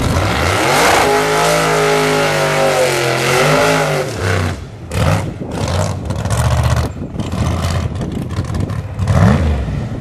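Drag-race car's engine revving hard, its pitch sweeping up and down, then held at high revs through a tyre-smoking burnout, the sound choppy with short dropouts in the second half.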